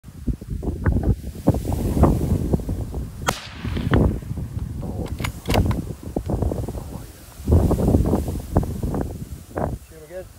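Wind buffeting the microphone in gusts. A few brief sharp cracks cut through it, one about three seconds in and two more around five seconds in.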